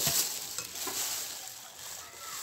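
Plastic bag crinkling and rustling close to the microphone, loudest in the first second and then going on more softly.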